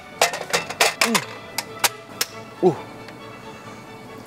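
Sharp clicks and knocks, about a dozen in quick irregular succession over the first two seconds, as a portable gas stove and a frying pan are set in place on a wooden table. Background music runs under it, and a short hum of voice comes near the end.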